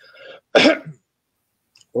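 A man clearing his throat: a faint rasp, then one short cough about half a second in.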